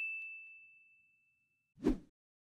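Logo-sting sound effect: a bright, bell-like ding on one high tone, ringing and fading away over about a second and a half. A short rush of noise comes near the end.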